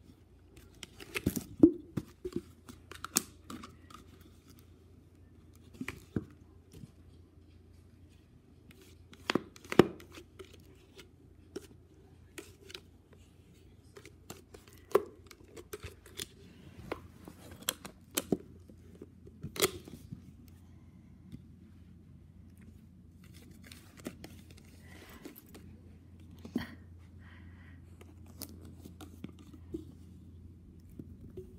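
A small dog biting and pushing an empty plastic soda bottle on carpet: the plastic crackles and clicks in irregular spells, with several sharper snaps in the first twenty seconds.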